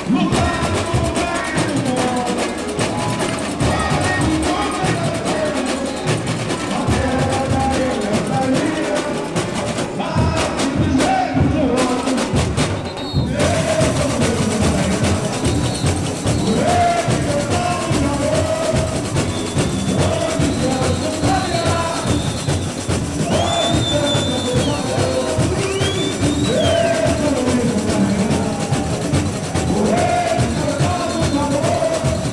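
Samba school bateria playing live in a dense samba rhythm of surdo bass drums and snare drums, with the samba-enredo sung over it. A few high rising-and-falling squeaks sound about two thirds of the way through.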